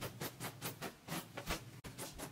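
Quick light footsteps, about five a second, as a person hurries around a bed.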